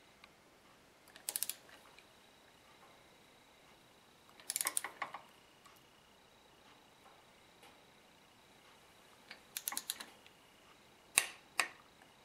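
Ratchet head of a click-type torque wrench clicking in short bursts of rapid clicks, three or four times, as a new spark plug is tightened into the cylinder head.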